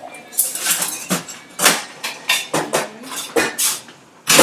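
Metal cocktail shaker tins and glassware knocking and clinking as a drink is built and the shaker is readied, a series of irregular sharp clinks.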